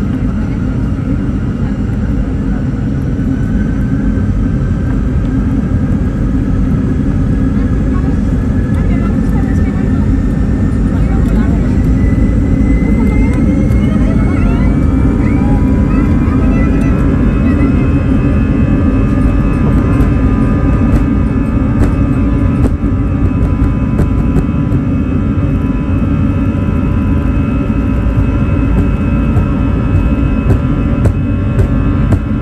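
Airbus A320's jet engines spooling up to takeoff thrust, heard from inside the cabin: a whine that rises in pitch over the first half and then holds steady over a loud, low rumble as the aircraft accelerates down the runway.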